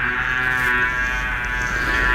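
A steady, nasal mosquito buzz, made as the mosquito in the story flies from one room to the next.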